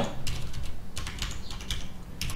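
Typing on a computer keyboard: a run of quick keystroke clicks.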